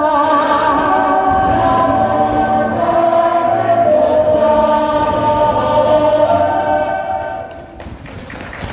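Choral vocal music, several voices holding long notes with vibrato over a low hum, fading out near the end.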